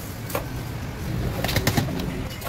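A pigeon cooing low in the background, with a short clink early on and a quick run of sharp clinks and rattles against the blender jar in the second half, as the white ice or sugar goes into it.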